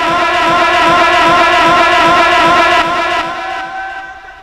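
A man's voice holding one long, loud chanted note with a wavering vibrato, amplified through a microphone and PA system, fading out near the end.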